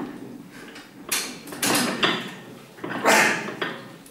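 A weightlifter breathing hard and forcefully through a set of very heavy barbell shrugs, several loud rushing breaths with each lift.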